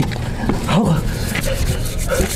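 A person moaning in pain with short cries that rise and fall, one just under a second in, from someone lying hurt after a fall.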